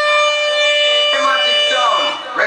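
Sound-system siren effect held on one steady high tone, after rising into it just before. A man's voice shouts over it from about halfway in.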